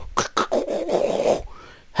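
A man's mouth sounds between sung lines: a few short, sharp beatbox-like bursts, then about a second of rough, breathy noise that fades out near the end.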